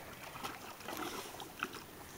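Water sloshing and lapping in a plastic paddling pool as a bulldog steps in and settles down in it, with a few short, soft splashes.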